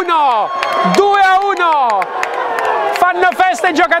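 A man's voice shouting two long cries that fall in pitch, over crowd cheering, in celebration of a late goal in a football match.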